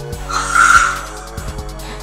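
Toy velociraptor's built-in speaker playing a short dinosaur call, under a second long, about a third of a second in, over steady background music.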